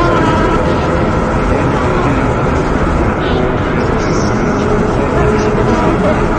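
Heavily degraded ambient soundscape: a loud, steady wash of distorted noise with faint held tones drifting through it.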